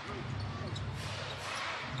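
Basketball arena ambience: a steady crowd murmur with a basketball being dribbled on the hardwood court and faint distant voices.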